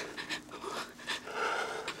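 A person panting: quick, heavy breaths, roughly two or three a second.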